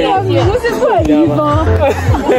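A woman talking animatedly, over background music with a steady bass line.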